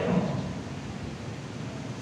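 Steady hiss of background room noise during a pause in a man's speech over a handheld microphone, the last of his words fading out in the first moment.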